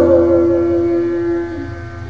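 Backing music between sung lines: one steady held note with no vibrato, fading away over about a second and a half.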